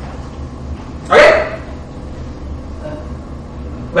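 A man's voice says a single short, loud "okay" about a second in, over a steady low hum of room noise.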